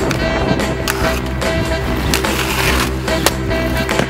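Aggressive inline skates rolling and grinding on concrete ledges, with a few sharp clacks of landings, the sharpest about three seconds in, under a rock music soundtrack.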